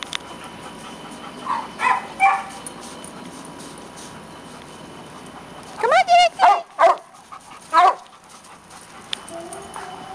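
A dog giving short yips: three about two seconds in, then a louder run of four or five from about six to eight seconds in, the first with a wavering pitch.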